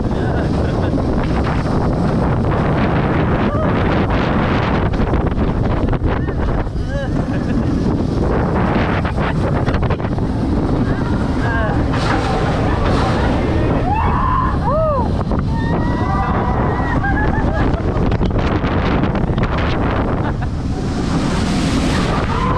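Heavy wind rushing over the microphone on a moving roller coaster, a loud, steady rumble. A few brief raised voices from the riders come through near the middle.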